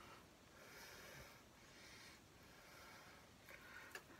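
Near silence: faint room tone with a few soft breath-like sounds.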